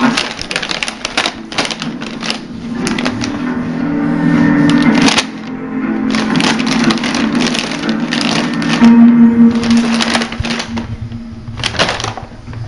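A shiny plastic bag crinkling and crackling in irregular bursts as a kitten paws at it and pushes into it, over background music with low held notes.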